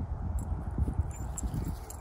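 Wind buffeting the microphone: an uneven, fluttering low rumble, with a few faint ticks.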